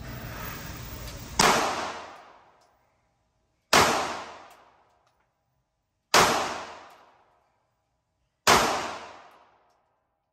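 Taurus pistol fired four times, single shots about two and a half seconds apart, each echoing for about a second down the concrete range lane. A low steady hum runs until the first shot.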